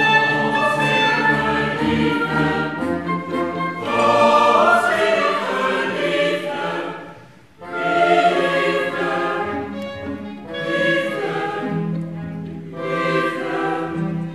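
Mixed choir singing with a chamber orchestra in a classical-style cantata. The music drops away briefly about halfway through, then choir and orchestra come back in together.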